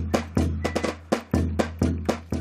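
Bass drum struck by a swinging beater, giving deep booming thuds about once a second, with sharp clicking percussion strokes in a quicker rhythm between them.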